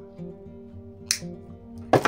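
Background acoustic guitar music, with a single sharp snip about a second in as side cutters cut through nylon fishing line, and a louder knock at the very end.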